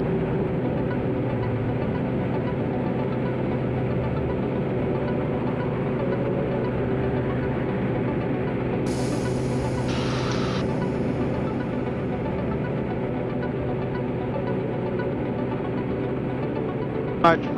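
Diamond light aircraft's piston engine and propeller at full takeoff power in the initial climb, a steady drone. About nine seconds in a high hiss comes in, with a brief burst of static a second later.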